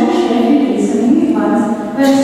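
Voices singing in long held notes that slide up and down in pitch.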